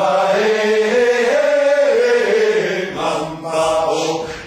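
Male a cappella vocal group singing together: one long held chord that rises gently in pitch and falls again, breaking off about three seconds in before a new phrase starts.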